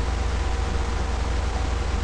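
Steady low hum with an even hiss over it, and a faint steady tone in the mid range; no other event stands out.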